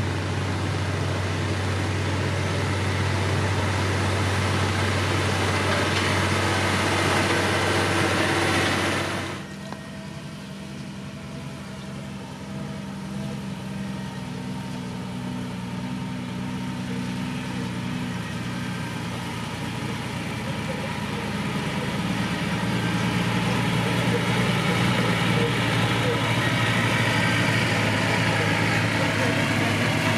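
LiuGong motor grader's diesel engine running steadily as its blade pushes gravel. It cuts off abruptly about nine seconds in, replaced by a water tanker truck's engine as the truck drives along spraying water, growing louder in the last third.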